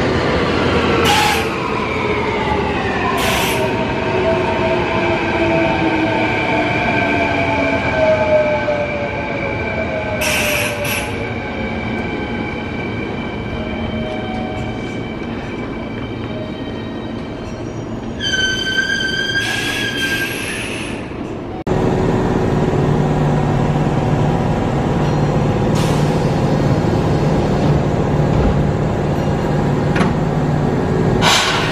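Kintetsu electric commuter train slowing at a station: the whine of its traction motors falls in pitch over several seconds, broken by a few short hisses, and a high wheel squeal sounds for a couple of seconds near the middle. Then, after a sudden change, a stopped Kintetsu 8000-series train hums steadily.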